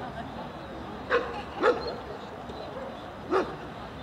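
A dog barking three times, short sharp barks about a second in, just after, and again near the end.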